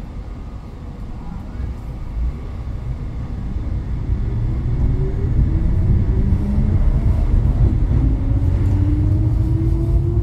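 Bozankaya low-floor tram pulling away from a stop: the whine of its electric traction drive rises steadily in pitch as it gains speed, over a low rumble of wheels on rails that grows louder.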